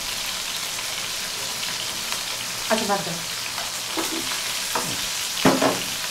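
Food frying in a pan on a gas stove, a steady sizzle, with a spoon stirring in the pan.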